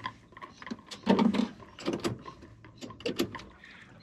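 Scattered small clicks and knocks of hands working at a boat battery's negative terminal and multimeter leads, setting up an inline current test, with a louder dull thump about a second in.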